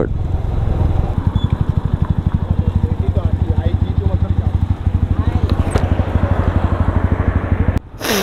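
Motorcycle engine idling with an even low pulse, about eleven beats a second, once the bike has slowed to a stop. The sound stops abruptly near the end.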